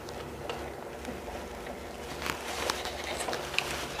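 Quiet handling noise: a few faint light clicks and rubs from hands on a plastic scale-model tractor, mostly in the second half, over a low steady hum.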